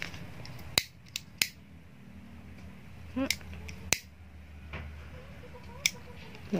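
About five sharp, separate clicks and taps as satin ribbon and clear plastic sheet are handled.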